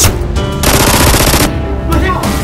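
Automatic gunfire sound effect standing in for Nerf blaster shots: a sharp report right at the start, then a dense burst lasting just under a second from a little past halfway. Background music plays underneath.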